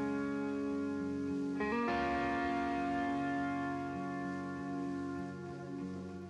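Electric guitar playing a slow song intro: ringing chords held through effects, changing about two seconds in, with bass guitar underneath.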